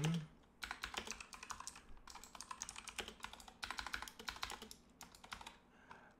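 Fast typing on a computer keyboard: quick runs of key clicks broken by brief pauses.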